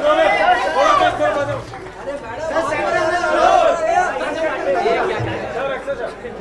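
Chatter of many voices talking and calling out over one another, with no single speaker standing out.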